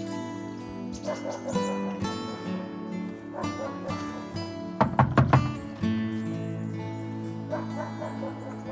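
Background music with held tones; about five seconds in, four quick loud knocks on a house door.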